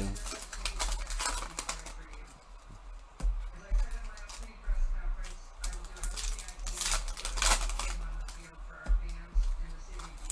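Foil trading-card pack wrappers crinkling and tearing open in several short bursts, the loudest about seven seconds in, over faint background music.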